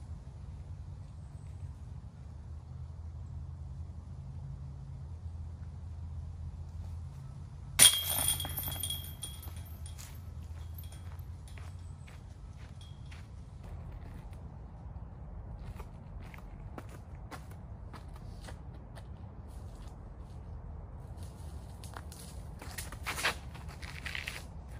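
A thrown disc golf disc (an Infinite Discs Roach putter) hits a chain basket about eight seconds in: a sharp metallic clash with about a second of jingling chains. Faint scattered footsteps follow, and a short clatter of clicks comes near the end.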